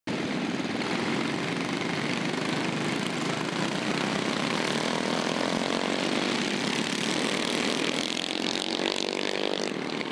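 Several racing kart engines running together as a pack goes by, a steady buzzing drone with a few engine notes overlapping.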